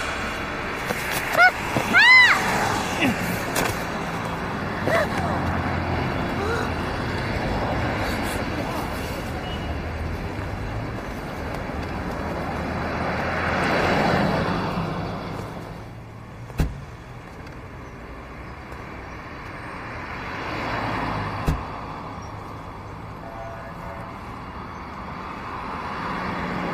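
Street traffic with a car engine running as a minivan pulls up, swelling as a vehicle passes about fourteen seconds in. A car door shuts with a sharp thump a couple of seconds later, and a second, softer thump follows some five seconds after that.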